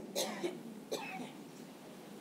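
Two faint, short coughs or throat clearings from a person, about a quarter of a second and about a second in.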